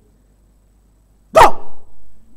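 A single sudden, very loud bark-like yelp from a person's voice into a close microphone, about one and a half seconds in, trailing off quickly.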